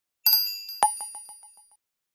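Bright electronic intro chime: a ringing ding about a quarter second in, then a second ding that repeats as a run of quick echoes, fading out.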